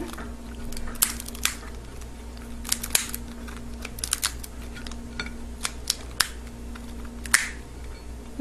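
Lobster tail shell cracking as it is pried open by hand after being cut down the back with shears: a dozen or so sharp, irregular snaps and clicks.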